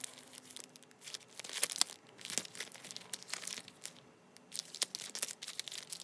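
Clear plastic sticker packets crinkling and rustling in irregular crackles as they are handled and shuffled, with a short lull about four seconds in.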